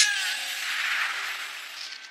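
Animated magic-spell sound effect, the red slime's magic against the shield: a hissing, sizzling rush that fades away over the two seconds.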